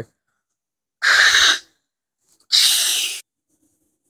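Two breathy hissing bursts from a person's mouth, each about half a second long and about a second and a half apart, the kind of mouth-made sound effects voiced during toy-figure play.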